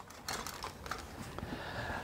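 Faint light clicks and rustling of kitchen utensils being handled on a countertop as a silicone spatula is picked up.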